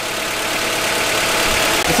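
Honda Prelude engine idling with the radiator cap off, growing steadily louder as the throttle is held slightly open to raise the idle. The running water pump circulates the coolant to bleed trapped air out of the freshly filled radiator.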